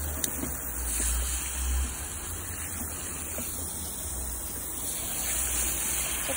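Garden hose spray rinsing foam off a car's wet roof and windows, a steady hiss of water hitting the bodywork and glass.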